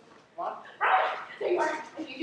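Actors' voices on stage: a short loud shout about a second in, followed by a brief pitched call.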